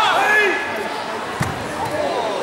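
A loud shout in the first half second, then one dull thud about one and a half seconds in: a karate fighter thrown down onto the foam mat.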